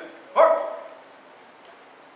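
Shouted drill commands from a colour guard: the tail of one call right at the start, then one loud, drawn-out shout about half a second in that dies away in the hall's echo.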